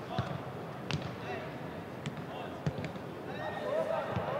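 Footballs being kicked during a passing drill: a few sharp thuds of boot on ball at irregular gaps, one close pair near the end, over distant players' voices and shouts.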